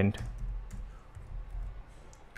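Computer keyboard being typed on: a few faint, scattered key clicks.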